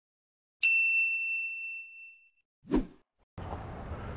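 A single bright bell ding, a notification-chime sound effect, striking once and ringing out as it fades over about a second and a half. A brief spoken word follows, then a steady outdoor background hiss starts near the end.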